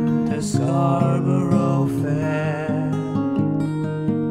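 Steel-string acoustic guitar played steadily, with a man's voice singing long, wavering notes over it.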